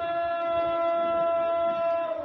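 A man's chanting voice holds one long, steady note. It has glided up into the note just before and does not waver.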